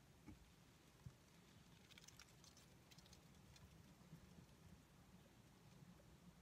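Near silence, with a few faint soft clicks about two seconds in as a briar tobacco pipe is puffed.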